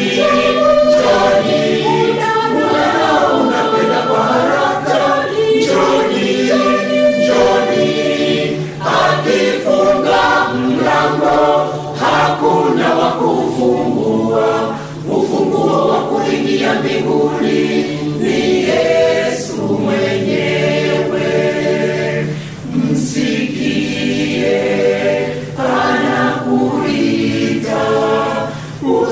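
Large mixed choir of men's and women's voices singing a Swahili hymn in parts, phrase after phrase, with brief dips between phrases.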